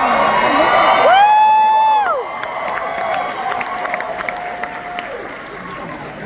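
Theatre audience cheering and applauding, with a loud high whoop close by about a second in and a long held shout after it.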